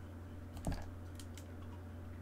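A few faint, scattered computer-keyboard clicks over a steady low hum, with one short low thump about two-thirds of a second in.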